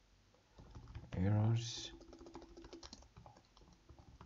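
Computer keyboard typing: a run of quick, uneven keystrokes starting about half a second in.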